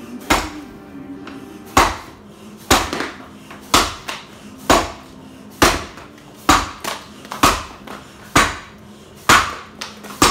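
An axe chopping a 13-inch tulip poplar log in an underhand chop: ten sharp strikes, about one a second, each ringing briefly. The log is dry in the heartwood, so the axe stops short there and pounds rather than cuts.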